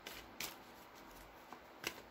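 A deck of tarot cards being shuffled by hand, quiet, with a few separate crisp card clicks: one about half a second in, a faint one later, and one near the end.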